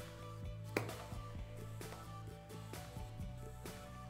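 Soft background music with held chords. A few faint knocks of a kitchen knife cutting raw pork on a wooden cutting board sit under it; the clearest comes about three-quarters of a second in.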